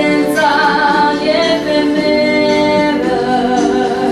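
A female singer performing a song solo, holding long sustained notes that glide between pitches.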